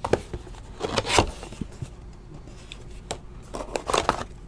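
Trading cards and their foil pack wrapper being handled: a few short rustles and slides as the cards are worked through by hand, with quiet gaps between.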